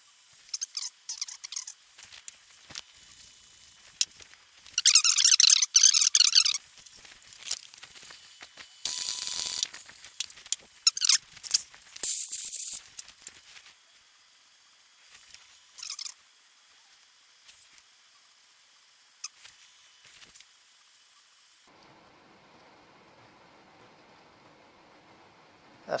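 Scattered clicks and knocks of metal parts being handled on a driveshaft and axle setup, with a high wavering squeal lasting about a second and a half about five seconds in, and two short bursts of hiss a few seconds later.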